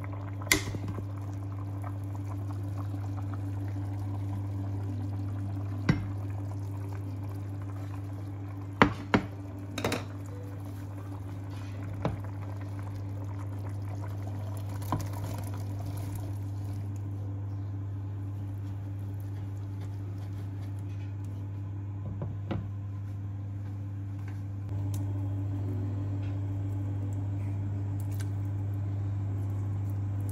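Pot of bean and pork broth bubbling and sloshing as it is stirred and beans are tipped in, with a few sharp clicks of a utensil against the pot. Under it runs a steady low hum that grows a little louder near the end.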